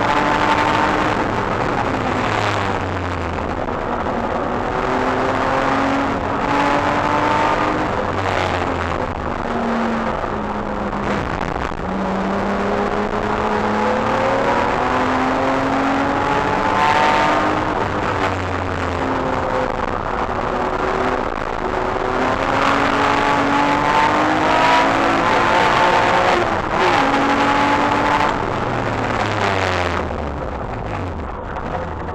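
BMW E36 engine heard from inside the cabin under hard track driving, repeatedly climbing in pitch through the revs, then dropping at each shift or lift before climbing again.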